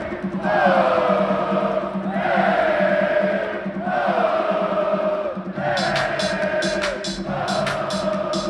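Live electronic dance music on a festival PA, heard from within the crowd: a breakdown with no kick drum, built from chant-like held notes that slide down in pitch about every two seconds. A ticking hi-hat pattern comes back about six seconds in.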